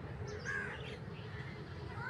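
Birds calling, with short harsh caw-like calls about half a second in and again near the end, over a steady low background noise.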